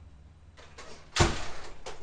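A single loud thump a little over a second in, with rustling before and after it and a short click near the end.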